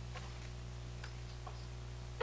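Low steady hum in a quiet room, with a few faint ticks.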